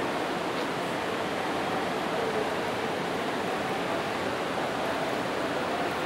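Steady, even hiss-like ambient noise of a large terminal concourse, with faint far-off voices now and then.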